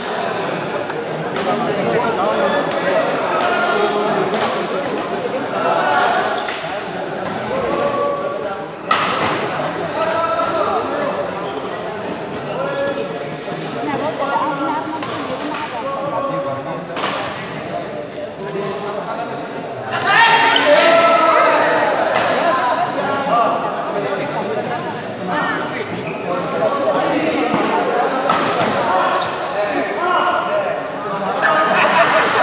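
Badminton rackets hitting the shuttlecock in scattered sharp smacks during doubles play, echoing in a large hall over the steady chatter of spectators.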